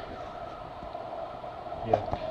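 A steady hum made of two constant tones under a faint hiss, with no distinct event: workshop background noise.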